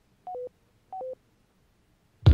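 Two short electronic beeps about two-thirds of a second apart, each a quick two-note tone stepping from higher to lower pitch.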